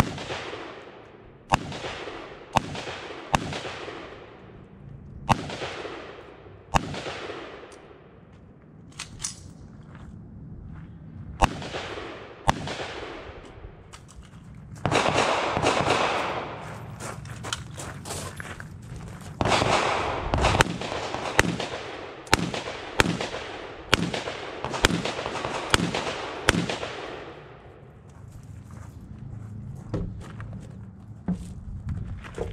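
Gunshots on an outdoor range, each with a long echo. At first they come singly, a second or more apart. Later they come in quicker strings of about two shots a second.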